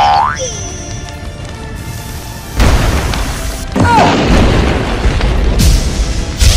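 Cartoon sound effects over background music: a falling, boing-like glide at the start, then from about two and a half seconds a loud, deep rumbling boom that carries on.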